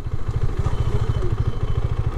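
KTM 390 motorcycle's single-cylinder engine running at low revs with a steady, rapid low pulse.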